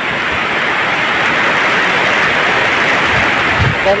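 Heavy tropical downpour: a steady hiss of hard rain falling on plants and ground, with a brief low thump about three and a half seconds in.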